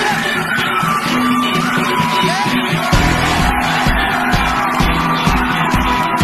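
A live pop-rock band playing the opening of a song on stage. The full drum beat comes in about three seconds in.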